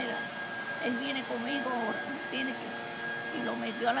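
An elderly woman speaking Spanish in short phrases, over a steady high-pitched hum from a machine.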